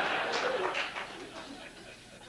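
Studio audience laughter dying away over the first second or so, leaving a few scattered laughs.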